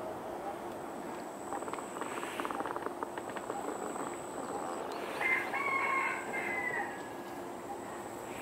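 A rooster crowing once, about five seconds in, in one call lasting about a second and a half that is the loudest sound here. A run of faint rapid clicks comes a few seconds before it, over a steady outdoor background.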